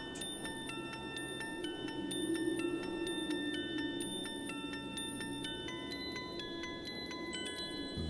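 Background music of soft chime-like bell notes ringing one after another over a low sustained tone.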